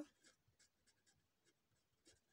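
Faint scratching of a pen tip writing on notebook paper, in short irregular strokes.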